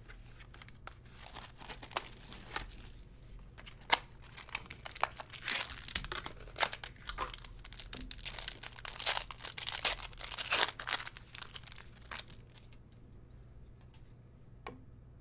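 A trading card pack's plastic wrapper crinkling and being torn open by hand, in dense bursts of crackling that are loudest in the middle, after a few light clicks from the packaging being handled.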